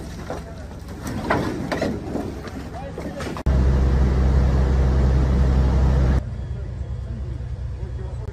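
Voices among the rescue crew over a low hum, then after a cut a fire engine's engine idling loudly and steadily for nearly three seconds, dropping to a quieter low hum near the end.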